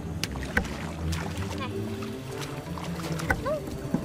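Splashing and sloshing of shallow muddy water as feet and a hoe stir through a flooded rice paddy, with background music running underneath.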